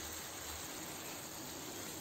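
Faint, steady sizzle of coconut-milk fish gravy simmering in a pan.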